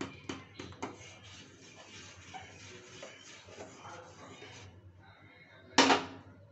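A metal spoon stirring milk and rice in a steel saucepan, clinking against the pan several times in the first second, with a steady scraping hiss of stirring after. Near the end comes a louder, sharp metallic clatter as the spoon is set down against the pan's rim.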